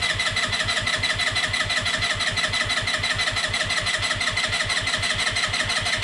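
Electric starter cranking the Peugeot Django 125's four-stroke single-cylinder engine, with an even pulse of about seven beats a second, without firing. The engine is turning over while fuel is drawn up to fill the newly fitted carburettor's float bowl.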